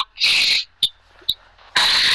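A short breathy hiss, like a quick breath, then two faint clicks during a pause between spoken phrases.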